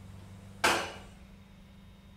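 A single sharp clunk about half a second in, fading away within half a second, over a steady low hum from the 1972 KONE ASEA Graham telescoping hydraulic elevator.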